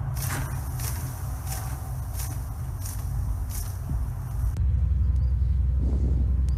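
A leafy branch carrying a honeybee swarm is shaken over an open hive box: about six brief rustles at a steady pace, over a low rumble. After about four and a half seconds the rustling stops and a louder steady low rumble is left.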